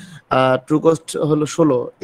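Only speech: a person talking.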